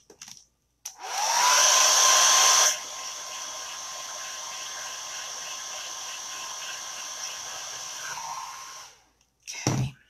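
Handheld hair dryer blowing on a just-washed chalk transfer to dry it. The motor whine rises to a steady pitch as it switches on about a second in, drops to a quieter level a couple of seconds later, then winds down and stops near the end, followed by a short thump.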